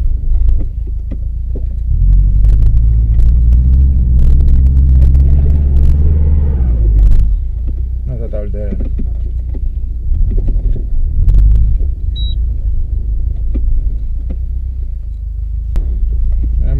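The low rumble of a Subaru Forester 2.0XT's turbocharged flat-four engine, heard from inside the cabin. The engine note climbs from about two seconds in to around seven seconds, then falls away. Scattered sharp clicks and knocks run throughout.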